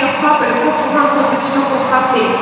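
A person talking continuously, with no other sound standing out.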